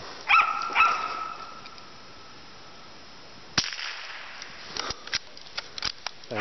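A single rifle shot about three and a half seconds in, preceded by two short rising whine-like calls in the first second, with a few light clicks after the shot.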